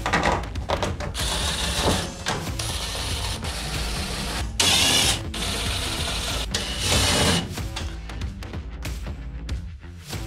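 Cordless DeWalt impact driver tightening sheet metal screws into a van's sheet-metal door, with a rattling hammering in several runs of a second or two. The loudest run comes about five seconds in.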